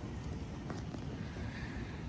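Outdoor ambience on a golf green: a steady low rumble of wind on the microphone, with a couple of faint ticks about a second in.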